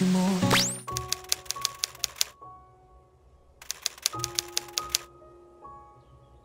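Typewriter key-clack sound effect in two quick runs, each about a second and a half long with a pause between, over faint sustained tones. Just before it, the music cuts off with a short rising sweep.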